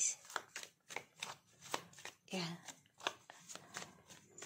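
Tarot cards being handled and shuffled: a run of irregular, quick card clicks and snaps.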